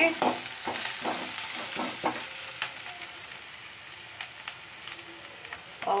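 Rain pattering on a moving car, heard from inside the cabin: a steady hiss full of small ticks that grows slowly quieter.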